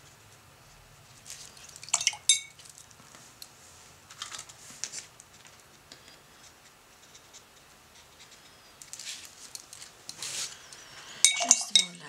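A paintbrush clinking and tapping against a hard paint palette in short clusters: about two seconds in, around four to five seconds, and from nine to eleven seconds. The loudest, ringing clinks come about two seconds in and near the end.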